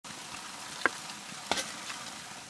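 A spade working the soil among stones, knocking sharply twice, over a steady background hiss.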